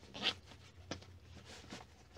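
A zipper on a fabric rolling backpack pulled in one short quick run just after the start, then a sharp click about a second in and some rustling of the bag as it is handled.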